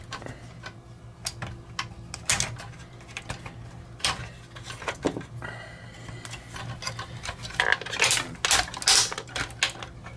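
Plastic parts of a Studio Cell 01 Unicron transforming figure clicking and knocking as they are flipped out and folded by hand, in irregular clicks that get busier near the end.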